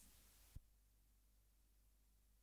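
Near silence after the reggae song has faded out, with the last trace of the music dying away at the start and a single faint low thump about half a second in.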